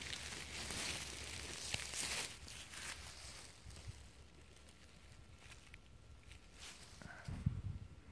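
Faint rustling and handling noise as hands move a small plastic power bank and its cable about in grass. It is louder in the first few seconds, with a few light clicks, then quieter.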